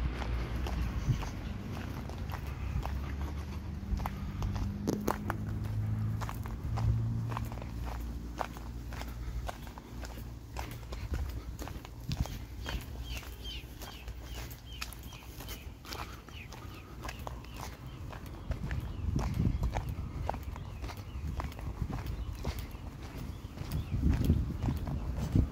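Footsteps of a person walking at a steady pace along a sidewalk, about two steps a second. A vehicle's low rumble runs under the steps for the first several seconds.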